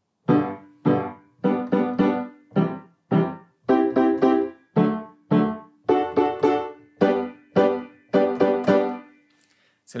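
Piano playing short, detached staccato block chords through the G major primary chords (I, IV, V, I) in a repeating ta-ta-ti-ti-ta rhythm, two longer strikes followed by two quick ones and another longer one; each chord is cut short and dies away. The playing stops about a second before the end.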